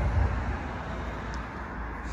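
Steady low outdoor background rumble with a faint even hiss, like distant road traffic, with no distinct event.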